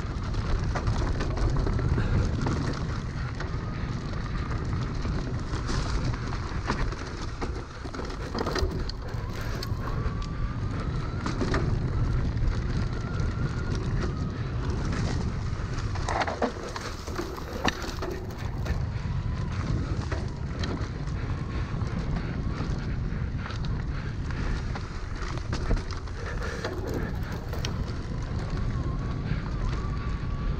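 Electric mountain bike ridden fast down a dirt forest trail: steady wind and tyre rumble with frequent rattles and knocks from bumps, and a faint motor whine that drifts up and down in pitch.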